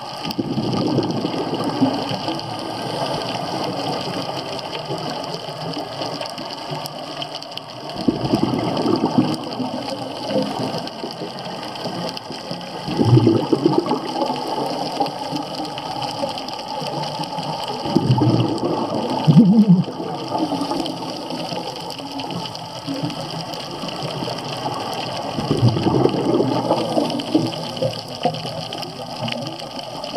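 Scuba regulator exhalation bubbles heard underwater: a bubbling rush comes roughly every five seconds over a steady watery hiss.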